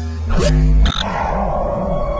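Electronic logo-intro sound design. Glitchy, stuttering digital blips fill the first second, then a steady electronic tone sets in over a low pulsing warble about three times a second.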